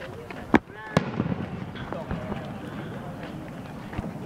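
Two sharp firework bangs, a little under half a second apart, over the chatter of a crowd.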